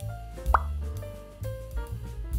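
A short rising plop sound effect about half a second in, over light background music with steady bass notes.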